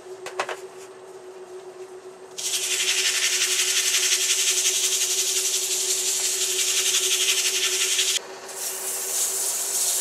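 Foam-backed sandpaper sanding a maple ball spinning on a wood lathe: a loud steady hiss starts about two seconds in, cuts off suddenly near eight seconds, then comes back more quietly. A steady hum from the running lathe lies beneath throughout.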